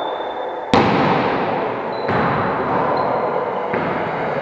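A volleyball being hit: three sharp smacks echoing around a large gym hall, the first and loudest about a second in, the others near the middle and near the end.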